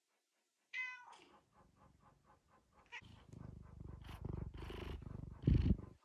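Domestic cat giving a short meow about a second in, then purring steadily from about three seconds in. The purring gets louder near the end as the cat comes right up to the microphone.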